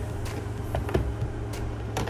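A few faint, light taps and clicks of a makeup brush being dipped into and tapped off a pressed eyeshadow palette, over a steady low hum.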